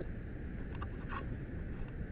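Steady low rumble of street noise and wind on a helmet-mounted camera microphone, with a faint short sound about a second in.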